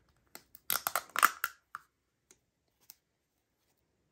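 A small plastic mica powder jar being handled, giving a quick run of light plastic clicks and taps in the first couple of seconds and then two faint ticks.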